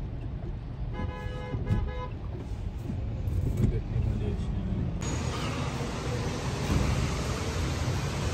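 Car running with a steady low road rumble, and a few short pitched beeps about a second in. About five seconds in, it gives way abruptly to a steady hiss.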